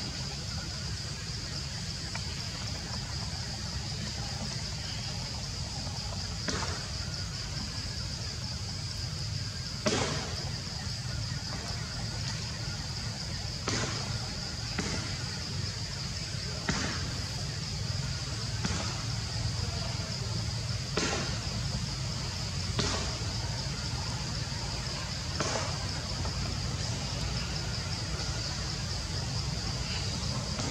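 A steady high-pitched drone of forest insects over a low steady background rumble. Short sharp clicks or knocks come every couple of seconds, the loudest about ten seconds in.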